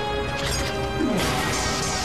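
Dramatic soundtrack music from a tokusatsu transformation scene, broken about a second in by a crashing sound effect: a falling tone that runs into a loud burst of noise.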